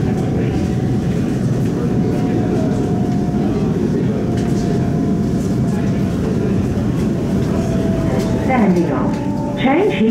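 Cabin ride noise of a High Capacity Metro Train electric train running at speed: a steady rumble of wheels on rail with a thin, steady hum above it. An onboard announcement voice starts near the end.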